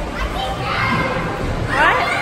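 Background voices of many children playing and talking at once, with one child's voice rising sharply in pitch near the end.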